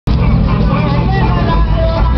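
Loud, steady mix of car noise, music with a strong deep low end, and people's voices, picked up from a moving car in traffic.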